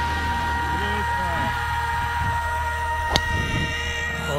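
A single sharp crack of a golf club striking the ball on a tee shot, about three seconds in, over voices and steady sustained tones.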